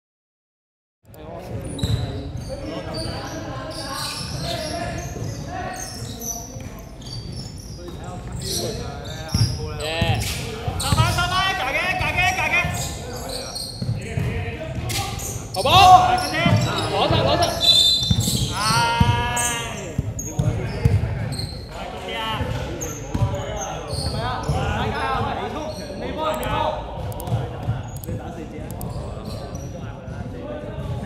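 Basketball game in a large echoing gym: the ball bouncing on a wooden court amid repeated knocks and players' voices calling out. It starts about a second in, and the loudest voices come about halfway through.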